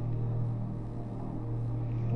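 A steady low hum, a single unchanging tone, with faint background noise above it.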